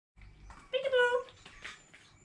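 A small dog whining once: a single short, high, steady whine about half a second long in the middle.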